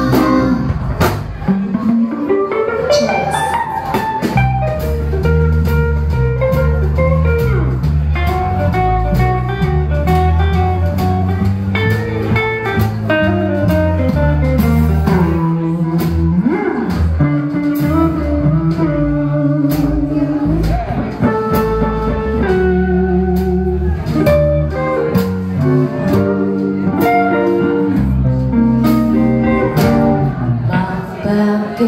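Live rockabilly band playing an instrumental passage: an electric guitar lead over upright double bass and a drum kit.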